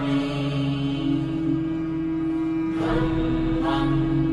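Buddhist chanting set to music: a voice holding long, steady notes.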